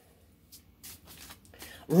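A deck of tarot cards shuffled by hand: a few soft, separate papery strokes as the cards slide against each other.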